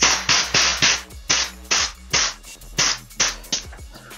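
Air suspension bag being let down through its fill valve: about ten short, irregularly spaced bursts of hissing air as the valve is pressed in pulses to drop the pressure from 120 toward 80 PSI.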